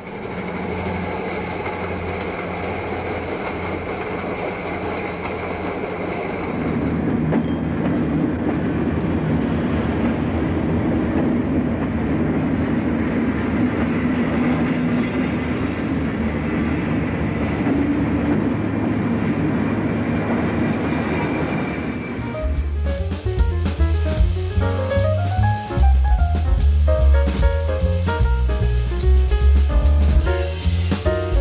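Diesel-hauled passenger train arriving, a steady rumble of locomotive engines and rolling wheels that grows louder about seven seconds in. About twenty-two seconds in it gives way to music with drums and a steady beat.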